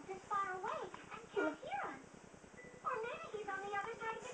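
A high-pitched voice making short phrases that slide up and down in pitch, with brief pauses between them.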